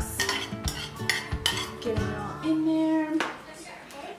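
A metal spoon scraping and knocking against a bowl as chopped celery is tipped out, with several clinks in the first two seconds.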